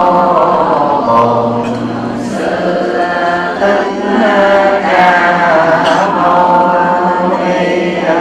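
A group of voices chanting a Buddhist chant together in long, sustained melodic lines.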